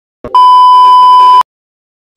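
A loud electronic beep: one steady tone held for about a second, with a short click just before it starts.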